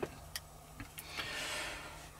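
Quiet car-cabin room tone with a few faint clicks in the first half and a soft hiss for about half a second around the middle.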